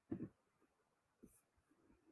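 Near silence: small-room tone, with one short faint knock or rustle just after the start and a fainter one a little past the middle.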